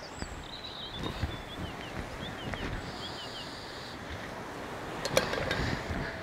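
A small bird calling outdoors in a run of short, quick, falling chirps over a steady low hiss, with a couple of sharp clicks about five seconds in.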